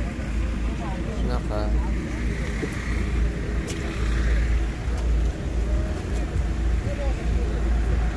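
Outdoor car-market ambience: people talking in the background over a steady, uneven low rumble.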